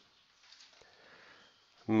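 Quiet room with a faint breath drawn through the nose, then a man's voice starts just before the end.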